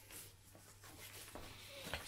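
Faint rustling and handling of a fabric pouch, over a low steady hum.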